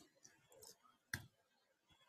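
Faint computer clicks from a mouse and keyboard as a value is entered in an on-screen menu: a couple of soft ticks, then one sharper click about a second in.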